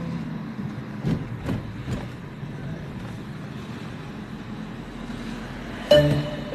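Car driving, heard from inside the cabin: a steady low rumble of engine and road, with a few soft knocks about a second in.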